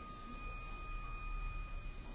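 A faint steady high-pitched tone with a second, higher tone above it, over low background hiss and hum.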